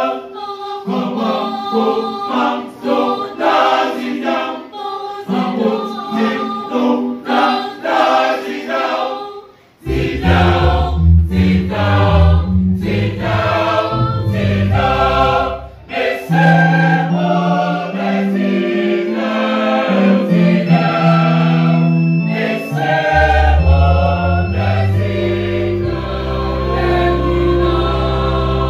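Mixed church choir singing a gospel song to electronic keyboard accompaniment. After a brief break about ten seconds in, a deep bass line comes in under the voices and runs on.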